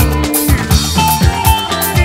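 Live band playing an instrumental passage: electric guitar over drum kit and bass, with a steady kick-drum beat about four strokes a second.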